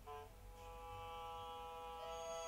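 Quiet background music: a short note, then a sustained chord held from about half a second in.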